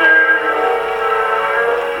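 Pathé vertical-cut record playing on an Edison disc phonograph: the acoustic recording holds one long steady chord in the music between sung lines.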